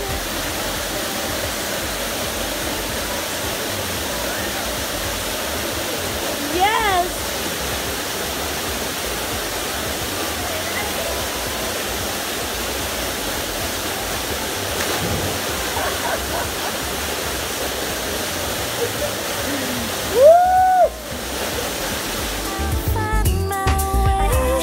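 Steady rush of a waterfall pouring into a plunge pool. A short voice call comes about seven seconds in, and a louder rising-and-falling shout comes about twenty seconds in.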